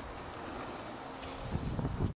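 Wind buffeting the microphone over steady outdoor background noise, with a heavier low rumble in the last half second.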